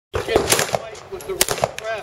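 Handgun shots: a few sharp reports, unevenly spaced, each with a short ringing tail.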